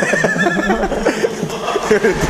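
Several men laughing and talking over one another. A high, wavering laugh or squeal stands out in the first part.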